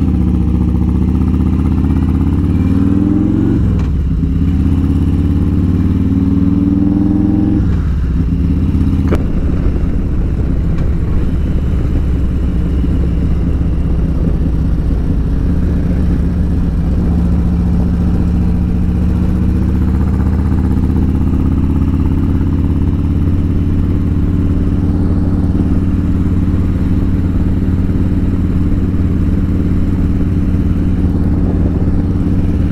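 Harley-Davidson Road Glide's Milwaukee-Eight 114 V-twin with an aftermarket D&D 2-into-1 exhaust, heard from the rider's seat while pulling away from a stop. The revs rise and drop twice as it shifts up through the gears in the first eight seconds, then it cruises steadily with a slow rise in pitch.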